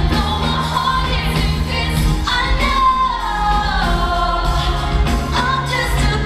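Live pop song: a woman singing into a microphone with long, gliding notes over an amplified band with a steady bass line.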